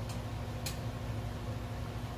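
A steady low electrical hum, with one faint short click about two-thirds of a second in as a sip of wine is taken from a glass.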